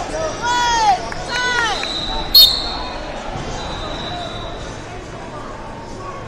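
Shouting voices over hall noise in the final seconds of the period. A little over two seconds in comes one sharp, loud signal with a brief high ring, marking the end of the first period.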